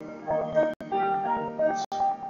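Upright piano accompanying a man singing into a microphone, with the sound briefly cutting out about three times.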